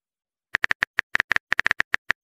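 Simulated phone keyboard typing clicks from a texting-story app: a quick, irregular run of about a dozen short taps starting about half a second in, as a message is typed.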